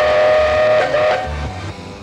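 A loud, steady whistle-like tone held at one pitch, with a brief wobble just before it cuts off a little over a second in.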